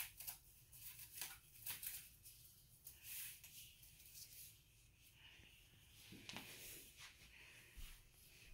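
Near silence with faint rustles and light taps of cardboard being handled as the cut-out centre is pushed out of a cardboard photo frame.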